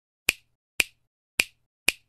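Four sharp finger snaps, about half a second apart, used as a sound effect for an animated title as its letters appear.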